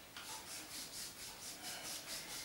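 A therapist's hands rubbing back and forth over a patient's thigh and hip in quick, even massage strokes, about four a second, faint and hissing. The massage works muscles he calls knotted.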